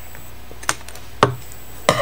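Scissors snipping through a thin wooden stir stick: two short sharp clicks about half a second apart.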